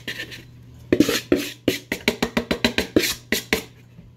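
A pink plastic mixing bowl tipped over a steel bowl, knocked again and again to shake the dry flour mixture out: a quick run of sharp knocks, about five a second, starting about a second in.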